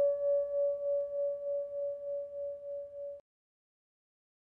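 The ringing tail of a single struck bell-like tone: one steady pitch with faint higher overtones, pulsing about three times a second as it slowly fades. It cuts off suddenly about three seconds in.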